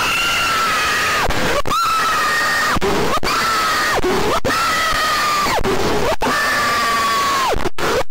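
A person wailing in about five long, high-pitched cries in a row. Each cry is held for about a second and falls in pitch at its end, with a short gasp between cries.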